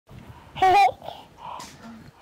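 A short, high-pitched, wavering vocal sound about half a second in, followed by fainter, softer voice sounds.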